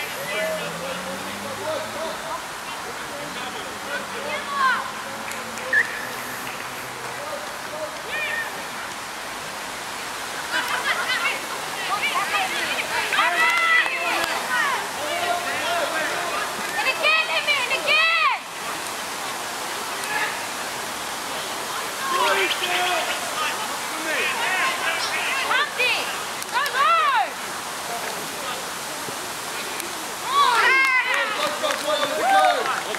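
Spectators and players shouting and calling across a rugby field, short distant overlapping calls that come thickest in bursts through the middle and later part, over a steady background hiss.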